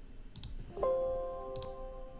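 Computer mouse clicks, then a Windows system alert chime about a second in: a steady electronic tone of several notes held together, fading slowly over about a second and a half.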